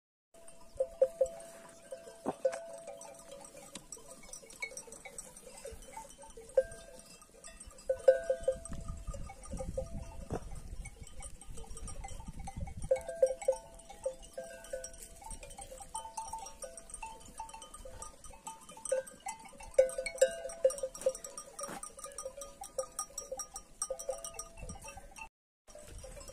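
Bells on a grazing flock of sheep clinking and ringing on and off. A low rumble runs for a few seconds in the middle.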